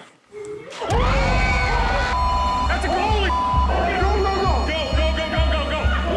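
Dramatic TV score that cuts in about a second in with a heavy bass pulse about twice a second, under frantic shouting voices. Two short steady bleep tones censor words in the shouting.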